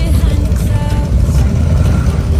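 Harley-Davidson V-twin motorcycle engines rumbling as the bikes ride slowly past, a deep low rumble.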